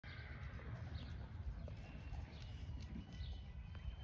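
Outdoor ambience dominated by a low, unsteady rumble, with a few bird chirps and thin whistles in the second half. Faint hoofbeats of a horse moving over sand footing lie under it.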